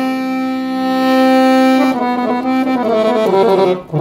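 Chromatic button accordion playing a slow sevdalinka melody: a chord held for about two seconds, then a line of shorter changing notes, with a brief break just before the end.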